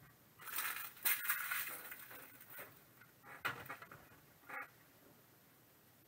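Trading cards and torn foil pack wrappers rustling and sliding as they are handled on a table, a couple of seconds of rustling followed by a few shorter rustles and one light click.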